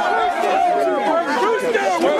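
A football team's players shouting and cheering together in a huddle, many overlapping voices.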